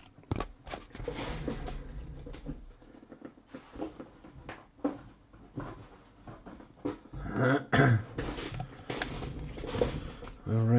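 Trading cards and plastic card holders being handled: rustling, light taps and clicks as cards are flipped through and set into clear stands. A brief, louder low sound comes about three-quarters of the way in.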